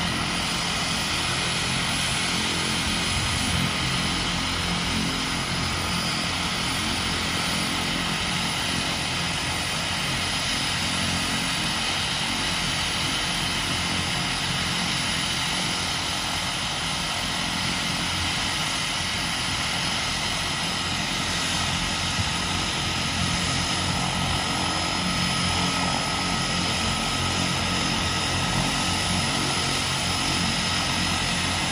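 de Havilland Canada DHC-6 Twin Otter's two Pratt & Whitney PT6A turboprop engines idling with the propellers turning: a steady propeller drone under a constant high turbine whine.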